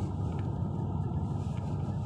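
Steady road and engine noise heard inside the cabin of a Jeep SUV driving along a highway.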